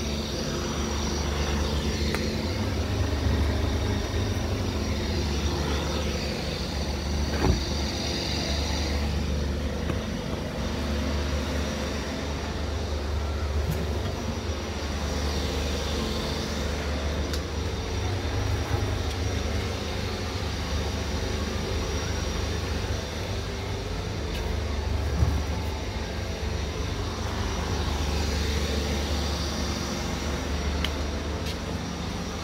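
A steady low mechanical hum that does not change for the whole time, with a few faint knocks.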